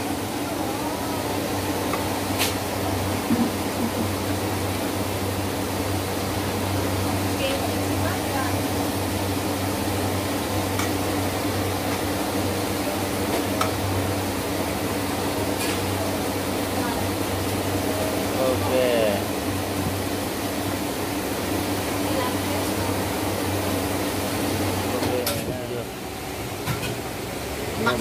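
A steady low machine hum with a few faint voices in the background. The hum drops away about twenty-five seconds in.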